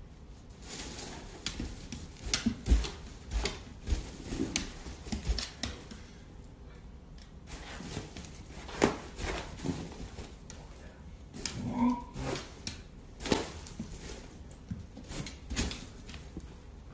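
A dog's claws clicking and scrabbling on a hardwood floor while rubber balloons bump and knock as it noses and paws at them. The sound is a run of irregular clicks and knocks with a lull in the middle.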